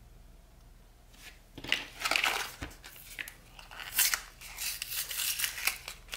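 Plastic blister pack of coin-cell batteries being pried and torn open: a run of crinkling with sharp snaps, starting about a second and a half in.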